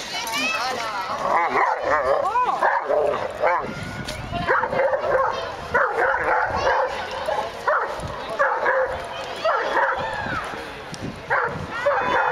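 Dogs barking and yipping again and again, mixed with people's voices calling out.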